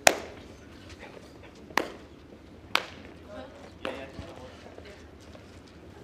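Lawn bowls clacking together on an indoor carpet rink: one loud, sharp clack, then three fainter single clicks spaced about a second apart.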